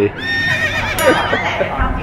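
Horse whinny sound effect: a high, wavering neigh that starts just after the opening and lasts about a second and a half.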